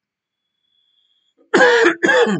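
A man coughs twice into his fist, clearing his throat. Two loud coughs come close together, starting about one and a half seconds in, after a short silence.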